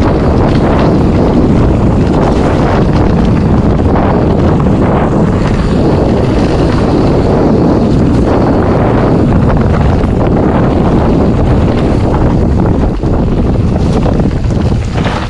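Maxxis mountain-bike tyres rolling fast over a dirt trail covered in dry leaves, a loud, steady rush with many small knocks from the bike going over bumps. Wind buffets the action-camera microphone throughout.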